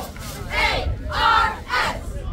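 Loud shouting from a crowd: three strong yells in quick succession, about half a second apart, over a low rumble of background noise.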